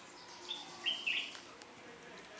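A bird chirping faintly, a few short high notes about half a second and a second in.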